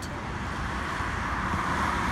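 A car driving past on the road, its tyre noise swelling toward the end.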